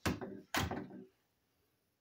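A door shutting: two sudden thuds about half a second apart, each dying away quickly.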